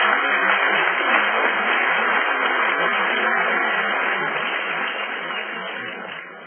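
Large audience applauding, slowly tapering off near the end.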